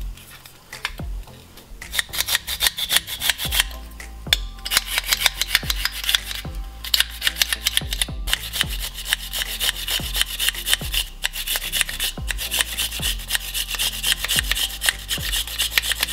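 A garlic clove being grated on a small handheld grater with a metal grating surface: rapid rasping strokes that start about two seconds in and keep going.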